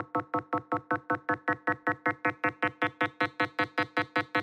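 Computer-synthesized 200 Hz tone built by adding up sine waves from a square wave's Fourier series, played as a rapid string of short notes. More and more sine waves are added as it goes, so the tone grows brighter and buzzier, moving from a hum toward a square wave's 8-bit sound.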